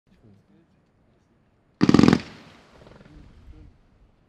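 Hoops Pyrotechnik 'Sunglow Strobe' F3 firework battery firing a fan-shaped volley: a rapid ripple of launch shots about two seconds in, lasting under half a second and then ringing away.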